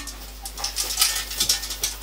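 Mail aventail of a bascinet jingling and the steel helmet clinking as it is pulled down onto the head: a scatter of small, light metallic ticks.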